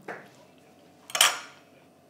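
Tableware clinking: a small clink at the start, then a louder clatter with a short ringing tail just over a second in.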